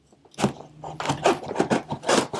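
Packing tape on a cardboard box being cut and scraped open by hand: a quick series of short scratchy strokes, starting about half a second in.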